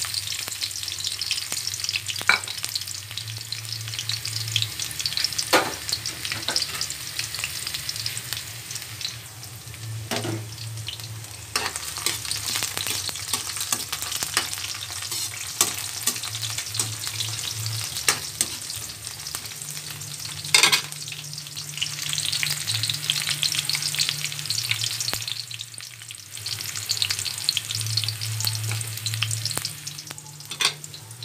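Chopped garlic sizzling in hot oil in a wok, stirred with a metal ladle that clinks and scrapes against the pan now and then, the sharpest clink about two-thirds of the way through.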